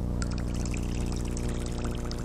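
Small, irregular splashing and trickling from an Allblue topwater lure with a spinning tail as it is reeled slowly across the surface; the tail churns up a small wake. Under it runs a steady low hum.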